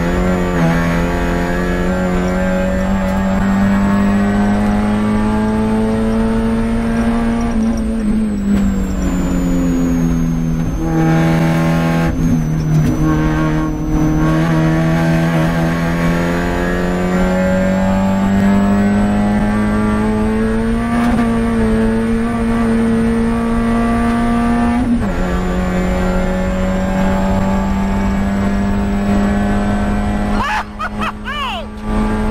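Spec Miata race car's four-cylinder engine pulling hard, heard from inside the cockpit. The revs climb, dip about eight seconds in and build again, then drop sharply about twenty-five seconds in at a gear change as the car accelerates toward 95 mph.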